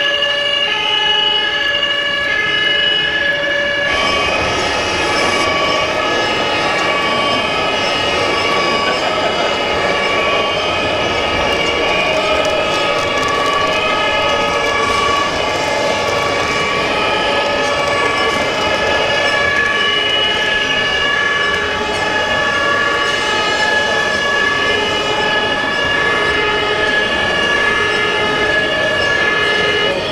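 Two-tone fire-engine sirens alternating between a lower and a higher note about once a second, played through the sound modules of RC model fire trucks. From about four seconds in, several sirens overlap over a steady background noise.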